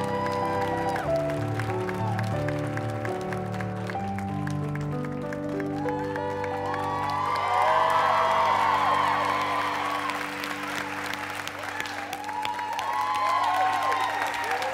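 Stage performance music of long held chords; about six seconds in, a studio audience starts cheering and applauding over it, loudest around eight seconds and swelling again near the end.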